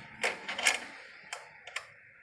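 A few light, irregular metallic clicks of a socket wrench being worked to tighten a bolt at the timing belt of a Suzuki Katana (Jimny) engine.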